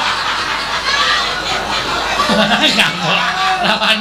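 People laughing and chuckling, with voices talking over the laughter.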